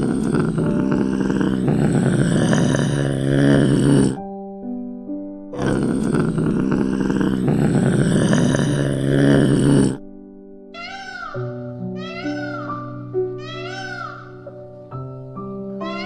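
A serval calling over soft background music. It gives two long, harsh, noisy calls in the first ten seconds, then a run of short rising-and-falling mewing calls, about one a second.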